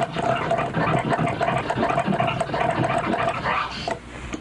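Crab scratch on a vinyl turntable: the record's sample is cut on and off in a rapid run of stutters by the mixer's crossfader, flicked with several fingers in turn, breaking off near the end.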